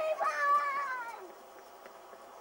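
A child's high-pitched shout, carried on from just before, then a second long cry that glides down in pitch and fades out a little over a second in.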